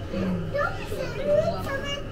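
Children's voices chattering and calling out in a public hall, high-pitched and overlapping.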